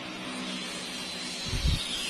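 Steady background hum and hiss, with a single low thump about a second and a half in.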